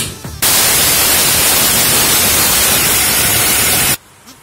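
Electric mixer grinder running at full speed, grinding dry grain into powder: a loud, steady whirr that switches on about half a second in and cuts off suddenly near the end.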